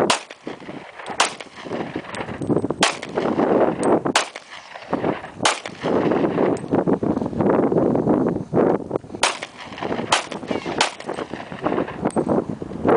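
Semi-automatic pistol fired eight times at an uneven pace, the shots one to two seconds apart, with a pause of a few seconds between the fifth and sixth.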